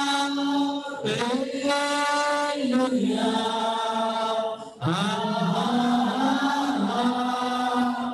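Worship singers singing a slow, repetitive chorus through microphones, in long held notes with short breaks between phrases about one second in and just before five seconds.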